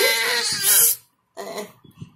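Infant crying and screaming in anger, with a loud, high-pitched cry that cuts off about a second in. After a short silence comes a brief, quieter whimper.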